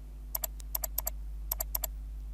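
Computer keyboard keys typed in two quick runs of light clicks, the first about a third of a second in and the second about a second and a half in.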